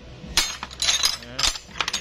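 Steel spanners and other old hand tools clinking against each other as a hand rummages through them in a plastic tool tray: a string of sharp metallic clinks.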